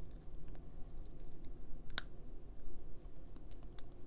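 Temporary clear plastic retainer being worked on the lower teeth by hand, making a few soft clicks and one sharp snap about halfway through.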